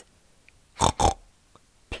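Two short pig grunts, oinks about a quarter of a second apart.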